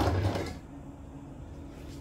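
A ball of pastry dough set down on a floured countertop: a soft, dull thud right at the start that fades within about half a second, then quiet room tone with a faint steady hum.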